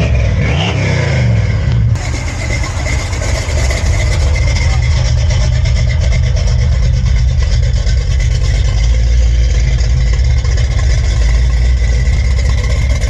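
Ford 460 big-block V8 bored out to 468 cubic inches with Sniper electronic fuel injection, in a 1972 Gran Torino: revved in the first couple of seconds, then running steadily.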